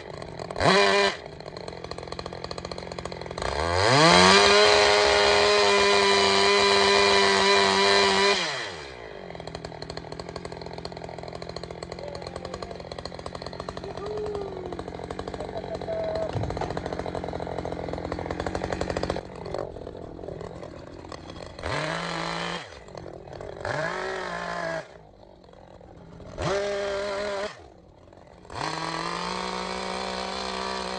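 Echo gas chainsaw carving into a wood block. It gives a couple of quick throttle blips, then one long full-throttle run of about five seconds, drops back to a lower steady running for about ten seconds, then gives four short bursts of throttle near the end.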